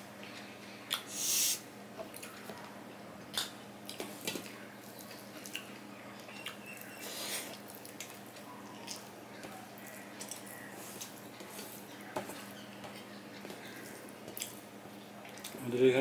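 A man chewing a mouthful of puffed rice mixed with curry, with scattered short crunches and mouth sounds, the sharpest about a second in, and his fingers working the rice on a steel plate.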